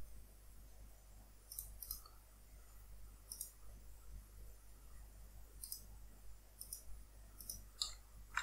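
Computer mouse buttons clicking, faint and high-pitched, about seven clicks scattered at irregular intervals with some in quick pairs, over a low steady hum.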